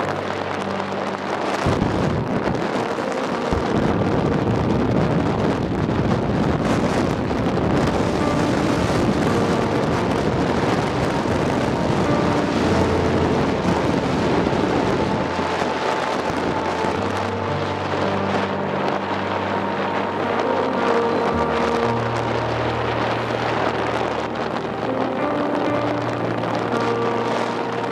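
Wind rushing over the microphone of a moving vehicle, with the road noise of travel, loudest in the first half, while music with steady held notes plays underneath.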